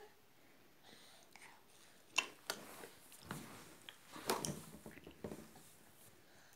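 A toddler eating slices of pepino fruit: a few faint, separate wet mouth clicks and smacks as he chews, with soft breathy sounds between them.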